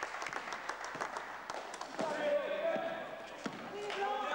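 A basketball bouncing on an indoor court floor in a series of sharp knocks as it is dribbled, with players' voices shouting from about two seconds in.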